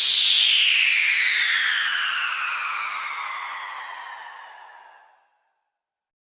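The closing sound of a dubstep track: one electronic synth tone gliding slowly down in pitch as it fades out, dying away to silence about five seconds in.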